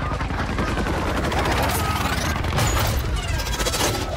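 Film-soundtrack battle effects: rapid gunfire mixed with blasts, growing denser in the second half.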